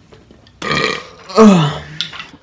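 A person burping loudly, twice: a rough burst a little after half a second, then a louder burp about halfway through that falls in pitch.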